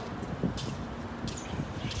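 Indoor basketball court ambience during a pause in play: a steady hall hum with a few faint knocks and clicks from players and the referee moving about.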